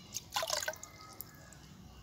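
Water splashing and dripping from a plastic cup worked in a tub of water, with a short burst of splashes about half a second in and a few scattered drips around it.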